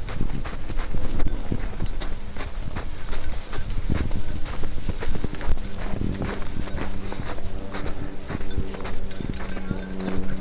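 Footsteps crunching through snow in an irregular walking rhythm, with low rumbling from a handheld camera on the move. A steady low hum joins about halfway through.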